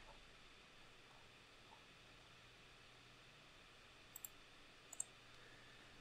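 Near silence: faint room tone, broken by two quick pairs of computer mouse clicks about four and five seconds in.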